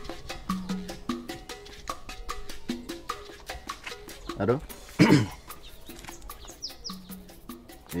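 Background music: a light, steady percussive beat of evenly spaced clicks under short low notes, with a man's voice speaking briefly about four seconds in.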